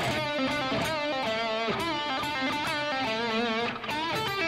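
Electric guitar playing an improvised fill: a single-note melodic phrase of held notes with wide vibrato, breaking off briefly near the end.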